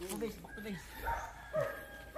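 Quiet talking by men, a few short spoken syllables.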